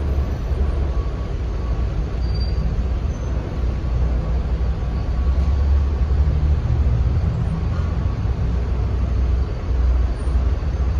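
Slow-moving car traffic in a road tunnel: a steady, loud low rumble of engines and tyres, made boomy by the enclosed rock walls.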